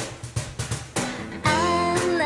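Pop song intro with guitar and drums in a steady beat, then a woman's singing voice comes in about one and a half seconds in, holding a long note.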